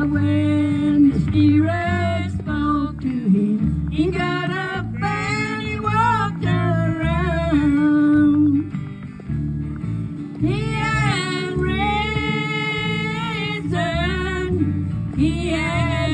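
Women singing a song with acoustic guitar accompaniment, the voices amplified through microphones.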